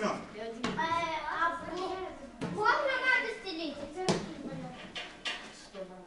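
Children's high voices talking in a gym hall, with a few sharp knocks in between.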